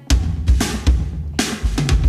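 Drum kit in a recorded pop-rock song, coming in after a brief gap with kick-drum and snare hits, several strikes about half a second apart.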